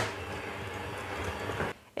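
Electric hand mixer running steadily at very low speed, its wire beaters working flour into cake batter in a glass bowl. The motor cuts off about a second and a half in.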